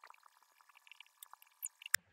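Faint plastic handling ticks, then one sharp click near the end, as a GoPro is fitted to a chin mount on a motorcycle helmet.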